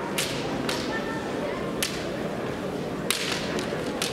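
Bamboo kendo swords (shinai) clacking sharply against each other four times at irregular intervals as two fencers spar at close range, in a reverberant hall.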